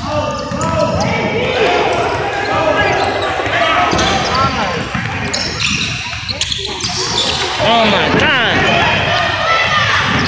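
Basketball game sounds on a gym court: the ball bouncing on the hardwood and sneakers squeaking, with a burst of squeaks a little after the middle, under players and spectators calling out.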